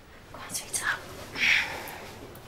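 Quiet whispering: two short breathy sounds with no voiced words.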